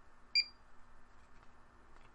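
USB card reader giving one short, high beep about a third of a second in, signalling that a card has been read.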